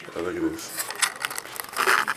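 Rustling and crinkling handling noise, crackly and loudest near the end, with a brief bit of voice about a quarter second in.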